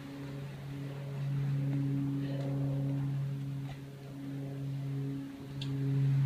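A steady low motor hum with a few overtones, growing a little louder after the first second and breaking off briefly about five seconds in.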